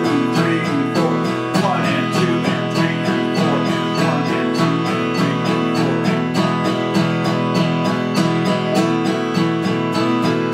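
Vintage Martin 0-28 acoustic guitar strummed in steady all-downstroke eighth notes, about three strokes a second, on one ringing chord, with a metronome clicking the beat.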